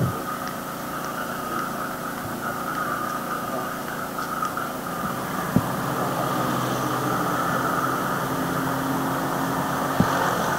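An engine running steadily, a constant hum with a hiss over it. A short low thump about five and a half seconds in.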